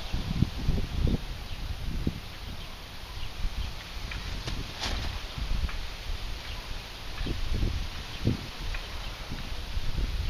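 Wind buffeting the microphone in uneven low gusts, with a few faint ticks and one sharp click about five seconds in.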